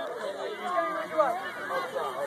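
Chatter of many overlapping voices, mostly young children's, with no single speaker standing out.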